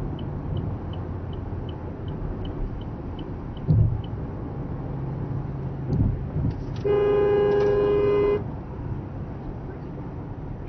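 Steady road noise inside a moving car, with the turn signal ticking about four times a second for the first couple of seconds, two dull thumps, then a car horn sounding one steady blast of about a second and a half, the loudest sound, about seven seconds in, at a car cutting too close.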